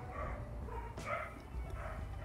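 A dog barking faintly a few times.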